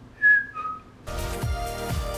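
Two short whistled notes, the second lower than the first, then electronic music with a steady beat starts about halfway through.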